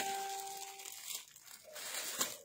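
Clear plastic garment bags crinkling as they are handled. A sharp click comes right at the start, and a steady beep-like tone fades out within the first second.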